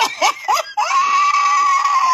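A woman laughing: a few quick high laughs, then one long high-pitched note held for about a second and a half.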